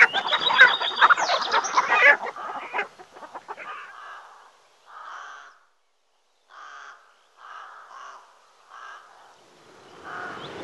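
Chickens clucking in a dense chorus, dying away after about two seconds. A bird then gives about five separate calls of about half a second each, with pauses between them.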